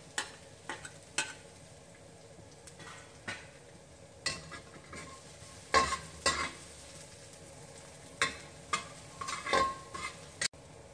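Chopped garlic sizzling in smoking-hot coconut oil in a wok. A metal wok spatula scrapes and clinks against the pan at irregular moments, loudest about six seconds in and again near the end.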